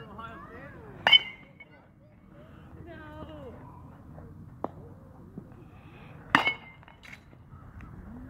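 A metal baseball bat hitting a ball twice, about five seconds apart: each hit is a sharp ping with a brief high ring.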